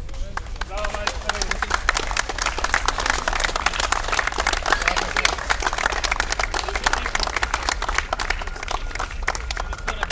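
A small group applauding with hand claps. The clapping builds about a second in and is strongest through the middle, with voices mixed in.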